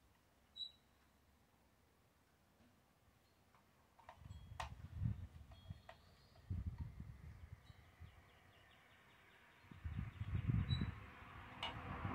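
Quiet outdoor background, then from about four seconds in, low rumbling gusts of wind on the microphone that come and go, with a few faint clicks.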